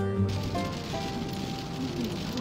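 Acoustic guitar background music ends shortly after the start, giving way to the steady noise of a car driving on the road.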